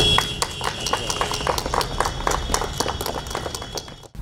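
A small group clapping by hand, the individual claps scattered and uneven, growing quieter toward the end.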